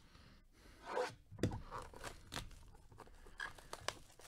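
Plastic shrink wrap being torn and crinkled off a hockey card hobby box. It comes as a run of short rips and crackles, starting about a second in.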